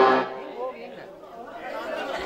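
A loud voice over the stage loudspeakers trails off at the start, then low audience chatter with faint music.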